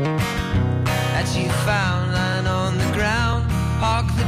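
Acoustic guitar strummed in a live solo song, its chords ringing over a steady low bass. From about a second in, a higher melody line that bends up and down in pitch sounds over the guitar.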